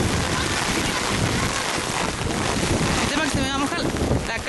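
Steady noise of heavy rain with wind buffeting the microphone. Near the end comes a brief high, wavering vocal cry.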